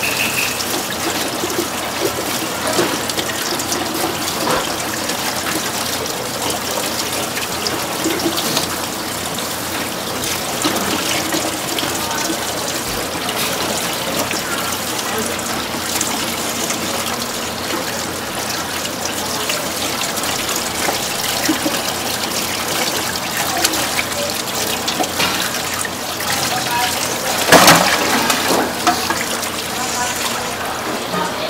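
Tap water running steadily into a steel bowl in a stainless sink as a raw squid is rubbed and rinsed by hand in it, with a louder burst of sound near the end.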